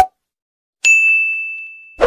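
Notification-bell ding sound effect: a short click, then a single bright bell strike about a second in that rings and fades away.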